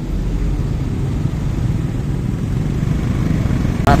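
Motorcycle engine running steadily at low speed in slow stop-and-go traffic: a continuous low rumble with no sharp changes in pitch or level.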